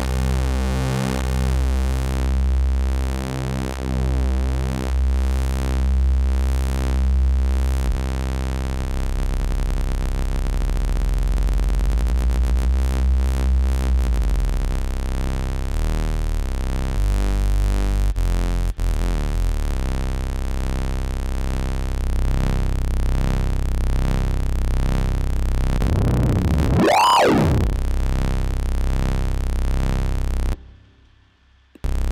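Software modular synthesizer patch playing a sustained, wavering bass tone whose timbre shifts as the patch is adjusted. Near the end there is a quick sweep up and back down in pitch.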